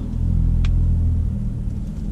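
A car engine running, heard from inside the cabin as a low steady hum that swells for about a second near the start as the car pulls away. There is a single light click partway through.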